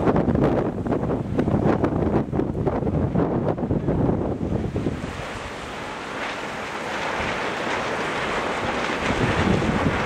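Wind buffeting the microphone in gusts, easing about halfway through to a steadier hiss.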